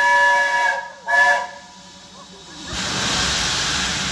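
Steam whistle of BR Standard Class 4MT locomotive 75014 Braveheart: a long blast, then a short one just after. About three seconds in, a steady hiss of escaping steam starts up.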